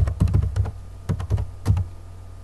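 Typing on a computer keyboard: a quick run of keystrokes, then three more spaced-out keys.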